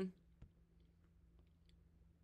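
Near silence on a call line, broken by one faint sharp click about half a second in and a few fainter ticks a second later.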